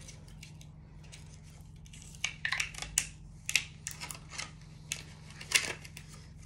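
Sweet packaging being handled and opened: a faint start, then from about two seconds in an irregular run of sharp crinkles and clicks.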